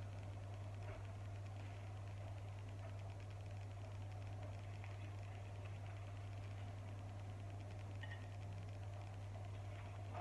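Quiet, steady low hum with a few faint light clicks of a metal spoon against a small glass pot as pickled beetroot and butternut squash discs are lifted out onto a plate.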